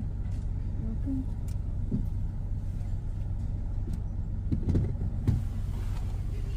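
A vehicle's engine idling, heard from inside the cabin as a steady low rumble. A few faint voice fragments come through, and a sharp knock sounds about five seconds in.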